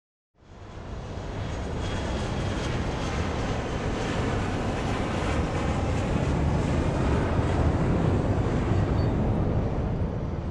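Jet airliner climbing out after takeoff: steady jet engine noise, a rumble with a rushing hiss above it, fading in about half a second in and slowly growing louder.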